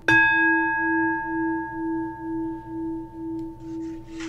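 A bowl bell struck once, then ringing on with a slow wavering pulse about twice a second and fading slowly.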